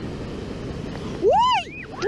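Baltic Sea surf washing up the sand as a steady rush. About a second in, a child gives a single high squeal that rises and falls, while running back from an incoming wave.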